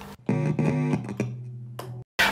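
A short guitar phrase: a few pitched notes in quick succession that then ring out and fade, stopping abruptly just before the end.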